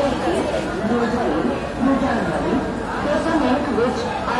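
Several people talking at once: a steady chatter of overlapping voices with no one clear speaker.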